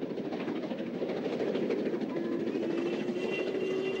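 Steam-hauled passenger train running across a viaduct: a steady rumble of wheels and exhaust, with a steady tone joining about halfway through.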